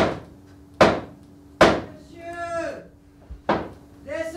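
Heavy wooden knocks, evenly spaced about one a second and ringing out after each blow: three in the first two seconds and another about three and a half seconds in. A brief voice sound falls between them.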